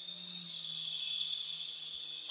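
A toy remote-control helicopter's small electric motor and rotor running: a steady high-pitched whine with a faint low hum under it.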